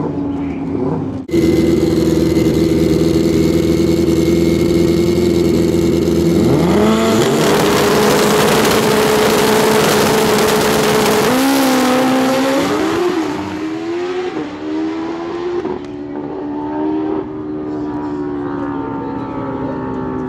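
Pro Street drag motorcycles running on the starting line, then revved hard and held at high rpm for several seconds. They launch with the engine pitch stepping up and down through gear changes and fade away down the track.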